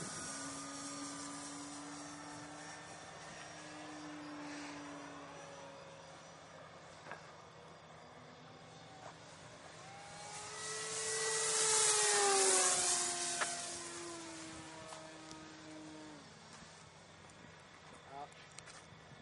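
Electric motors of ParkZone RC model planes whining overhead, their pitch gliding up and down. One plane passes close about ten to thirteen seconds in, louder, and its whine falls in pitch as it goes by.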